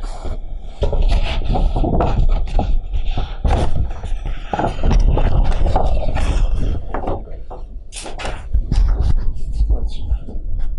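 Large sheets of drawing paper rustling and scraping as they are leafed through and lifted, in a dense run of irregular crackles and handling knocks.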